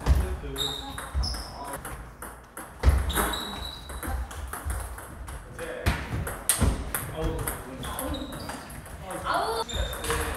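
Table tennis balls being struck by bats and bouncing on tables, heard as a scatter of sharp clicks in a hall where several tables are in play, with voices in the background.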